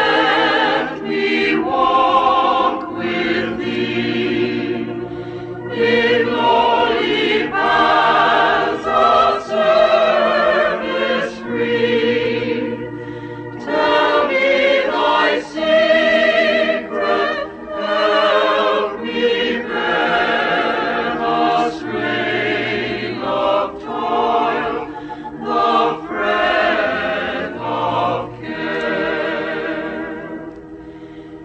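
A choir singing a hymn in held, wavering notes, phrase after phrase with short breaks between.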